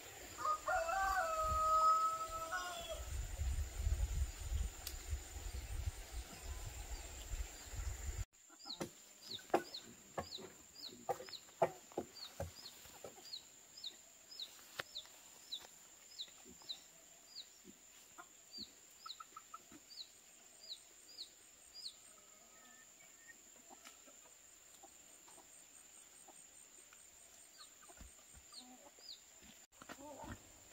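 A rooster crows once, a long held call about a second in, over a low rumble. After a cut, a run of short high chirps, about two a second, with scattered sharp clicks among them at first.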